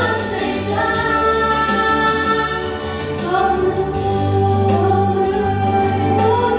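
Two female voices singing a colindă, a Romanian Christmas carol, together into microphones, with long held notes over a steady low accompaniment.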